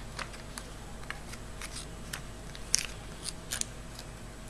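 Strips of paper being folded over each other by hand: a scattering of short, light crinkles and ticks as the paper is creased, with the loudest pair near the end.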